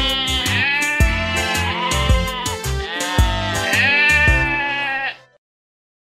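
Cartoon sheep bleating "baa" over a children's-song backing track, several long bleats that rise and fall in pitch. The music cuts off suddenly about five seconds in.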